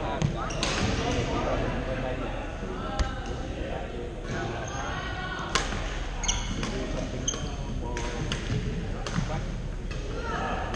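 Badminton rally: sharp, irregularly spaced cracks of rackets striking a shuttlecock, with short shoe squeaks on the court floor, echoing in a large hall over a steady background of voices from nearby courts.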